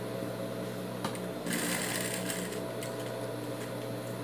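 Domestic straight-stitch sewing machine running steadily, stitching a small patch onto knit fabric all the way around, with a brief click about a second in.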